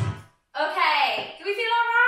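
Sung music cuts off abruptly just after the start, and after a brief silence a woman's voice calls out without words, sliding down and then up in pitch.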